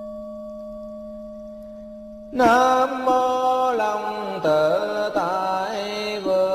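A steady ringing tone, like a struck Buddhist bowl bell, slowly fades. About two seconds in, a loud chanting voice comes in with a Vietnamese Buddhist invocation, its pitch sliding up and down in a melodic line.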